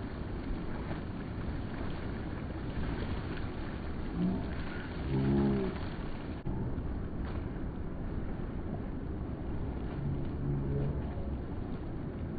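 Steady outdoor wind and water noise from swimmers in a river below a weir. Distant voices call out twice, first about four to five seconds in and again near the end.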